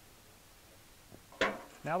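Low, steady background hiss, then a single short, sharp click about one and a half seconds in, followed by a man starting to speak.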